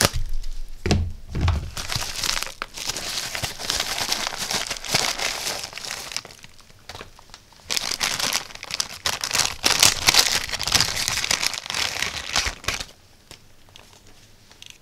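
Plastic packaging crinkling and tearing: a poly mailer bag is torn open, then a thin plastic bag is crinkled as a small electronic module is unwrapped from it. The crinkling comes in two long stretches with a lull about six seconds in, with a few low thumps of handling in the first second or so.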